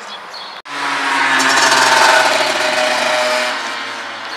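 A car running: the sound starts suddenly about half a second in, swells to a peak near the middle and fades, over a steady low hum.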